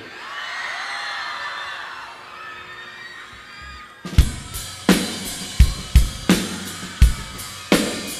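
A crowd cheering and whistling, then about four seconds in a live rock drum kit comes in with a steady beat: kick and snare hits about 0.7 s apart, with cymbals.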